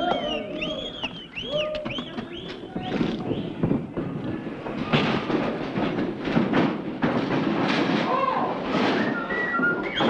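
A run of short whistles, each rising and falling in pitch, over the first three seconds, then a clatter of knocks and bangs with voices calling out.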